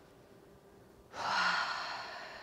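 Near silence for about a second, then a woman's long, audible breath that slowly fades.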